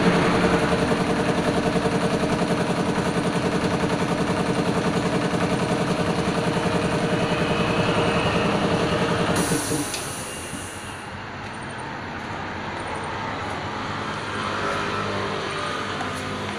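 A large engine running steadily with an even throbbing beat; about nine and a half seconds in it stops, with a short hiss, leaving a quieter steady hum.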